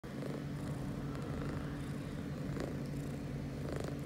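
Domestic cat purring steadily, close to the microphone, while its head is cradled in a hand.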